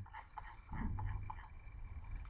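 Low room tone with a few faint, short clicks.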